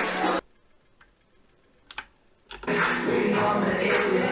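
Song playback cuts off suddenly, leaving near silence broken by two quick sharp clicks and a third a moment later, as the video is stopped and skipped back with computer controls. Then the music plays again.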